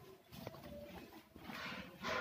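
Faint rustling and crinkling of a greased sheet as hands fold and press a soft, thin sheet of halwa on it. There are two soft swishes, the second louder, near the end.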